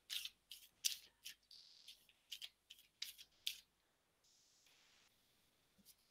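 Oracle cards being shuffled by hand: a faint run of short, crisp card snaps and swishes over the first three and a half seconds, then they stop.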